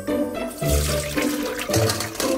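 Water poured out of a glass bowl of soaked potato chunks through a stainless steel mesh strainer, splashing into the metal bowl beneath. It starts about half a second in, over background music.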